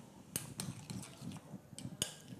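A spoon clicking a few times against a glass bowl while scooping mashed egg-yolk filling.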